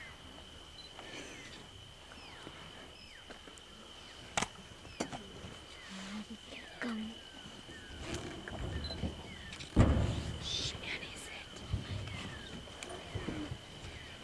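An African elephant feeding close by, pulling at grass and brush, with rustling and crunching that grows denser in the second half and one loud thump about ten seconds in. Behind it are a steady high-pitched insect drone and short falling chirps.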